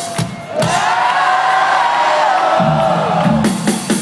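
Live rock concert heard from inside the crowd: a long held sung note that swells and fades over the band, with crowd noise. The bass and drums drop away in the middle and come back near the end.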